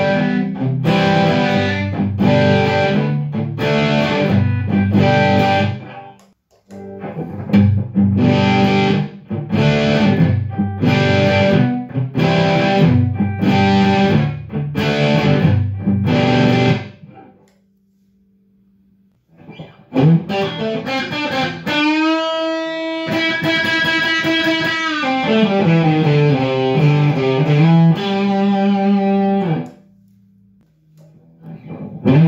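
Electric guitar overdriven by a pedal and played through a Marshall DSL20H amp on its clean channel, with no reverb or delay. Evenly strummed distorted chords for the first half, a short pause with only a faint hum, then held lead notes bent down in pitch and back up.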